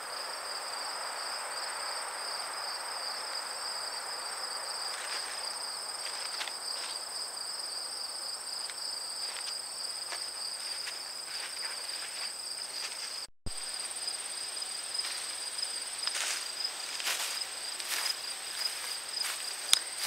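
Crickets chirring steadily in the garden at two high pitches at once, over a faint outdoor hiss. The sound drops out for an instant about two-thirds of the way through, and scattered light clicks and rustles follow.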